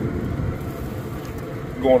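Wind blowing across the microphone: a steady, low rumbling noise. A word of speech comes in near the end.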